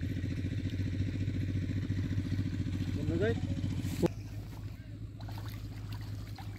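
A small engine running at a steady speed with an even, rapid firing beat, which breaks off with a click about four seconds in, leaving a quieter background. A short rising call sounds just before the break.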